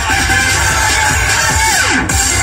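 Electronic-style television theme music with a heavy low beat, and a tone that glides steeply down in pitch near the end.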